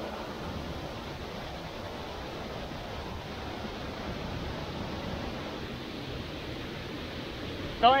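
Steady rush of a twin waterfall pouring into a rocky pool: an even roar of falling water that holds at one level throughout.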